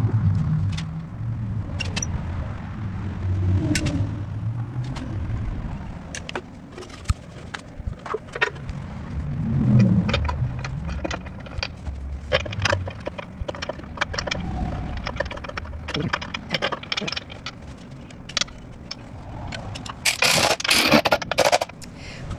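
Hand work on an engine: scattered clicks, taps and scrapes of parts and tools being handled over a low rumble, with a louder burst of noise near the end.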